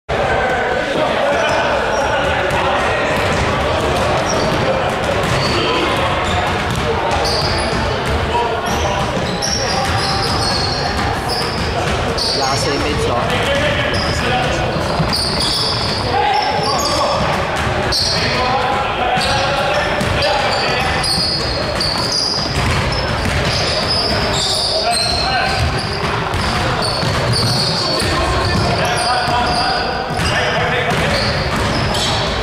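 A basketball bouncing on a hardwood gym floor during a game, with indistinct players' voices echoing in a large gymnasium.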